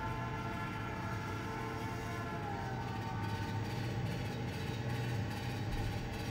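Sound effect of a train running along the rails, a steady sound.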